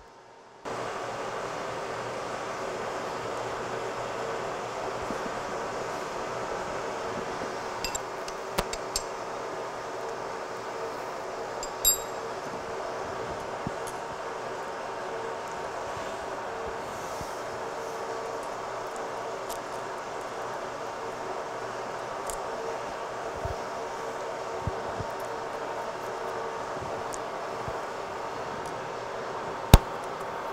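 A steady machine hum in the shop, with a few sharp metallic clinks as a steel feeler gauge and hands work against the boring bar in the cylinder bore. The loudest clink comes just before the end.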